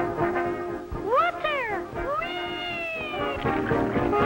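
A cartoon cat meowing: two quick rising-and-falling meows about a second in, then one long falling yowl, with brass-led band music before and after.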